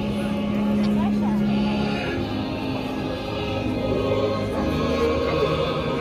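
Choral music: a choir singing over held low notes, one of which drops out about two seconds in.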